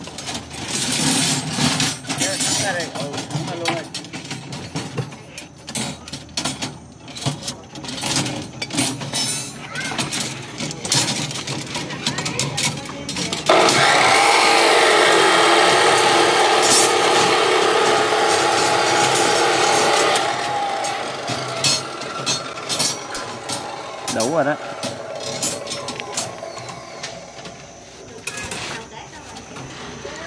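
Steel rebar and tie wire clinking and clicking in many short, irregular knocks as reinforcement cages are tied by hand. About halfway through, a loud steady noise with a hum in it starts suddenly, holds for about seven seconds, then fades.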